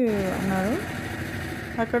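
A person speaking, with a pause about a second in that is filled by a steady mechanical running noise. The speech resumes near the end.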